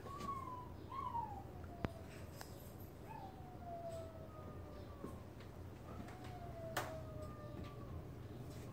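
Faint whining from a domestic animal: thin, drawn-out tones that slide slowly downward, repeated about five times. Two sharp clicks, one near two seconds in and one near seven seconds in.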